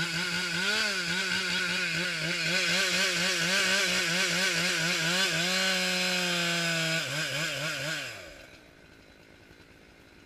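Husqvarna 372XP two-stroke chainsaw running at high revs, its pitch wavering up and down a few times a second, briefly holding steady, then shut off about eight seconds in.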